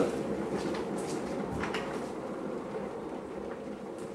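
Electric kettle coming to the boil: a steady rumbling hiss that slowly fades, with a few faint clicks and knocks.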